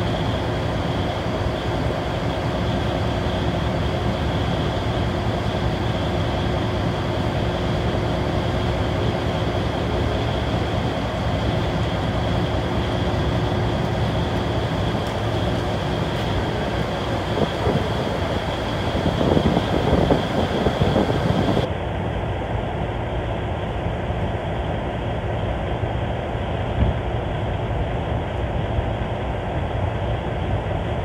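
Steady, loud rumble of a tour boat's engine mixed with wind on the microphone, with a faint steady high whine. About three-quarters of the way in the sound abruptly turns duller, as at a cut to another recording.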